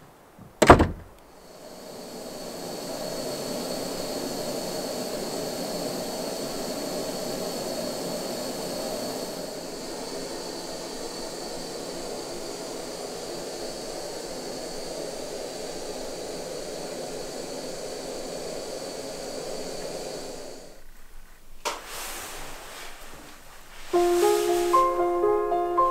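A wooden hut door shutting with one sharp thump about a second in, then a steady rushing noise with a faint high whine that cuts off a few seconds before the end, followed by a small click.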